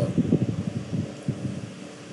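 A man's low, creaky voice held in a wordless hesitation between phrases, fading away over the two seconds.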